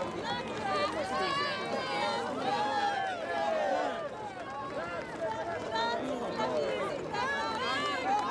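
A close crowd of many people calling out and talking over one another, their voices overlapping so that no single speaker stands out.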